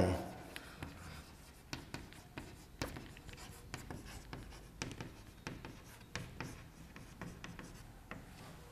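Chalk writing on a chalkboard: a quiet run of irregular short taps and scratches as the chalk strokes out words.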